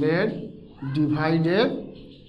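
A man's voice in two drawn-out stretches, the first at the start and the second from just under a second in, with the pitch sliding within each.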